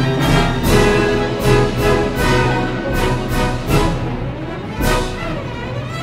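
Full symphony orchestra playing classical music, strings to the fore, with repeated sharp accented strokes.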